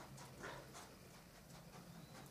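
Near silence: a faint low hum with a few soft, short scuffing sounds in the first second and again near the end.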